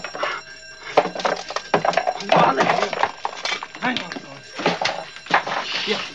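Voices and clattering, with an alarm bell ringing steadily underneath.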